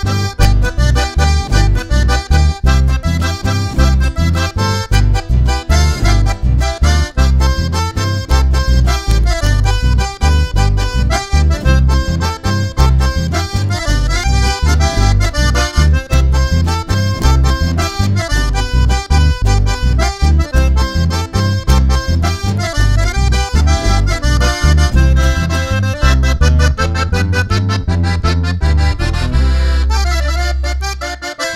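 Live chamamé played instrumentally: a button accordion carries the melody over a strummed acoustic guitar and an electric bass, with a steady bass beat.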